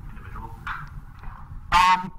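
Faint, distant talk, then near the end a short, loud voiced sound from the lecturer, a hesitation just before he starts to answer.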